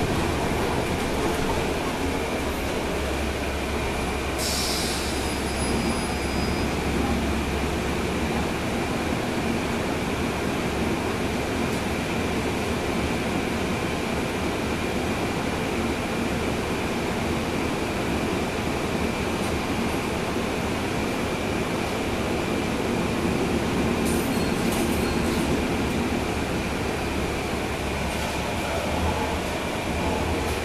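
Interior noise of a NABI 40-SFW transit bus under way, heard from the rear seats: its Cummins ISL9 diesel engine running under a steady low rumble of road and tyre noise, with a faint steady high whine. A short hiss comes about four and a half seconds in.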